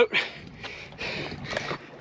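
A man breathing and sniffing in a few short puffs, about half a second apart, while straining against a hooked shark on rod and reel.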